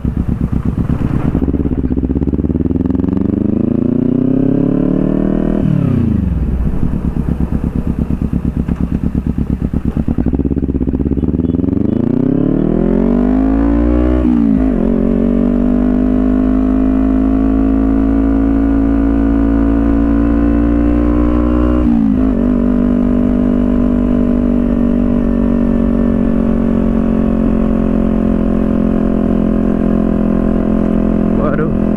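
Sport motorcycle engine pulling away and accelerating through the gears: the revs climb, drop sharply at a shift about five seconds in and again around fourteen seconds, then hold steady at a cruise, with one brief dip a little past twenty seconds.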